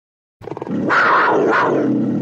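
Distorted Suhr electric guitar coming in about half a second in with a quick run of picked notes, then a held note whose tone brightens and fades twice, giving it a growling, animal-like sound.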